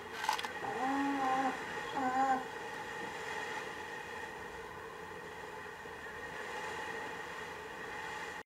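Two short, wavering pitched calls about one and two seconds in, over the steady rush of water and wind as a racing yacht sails fast through choppy waves.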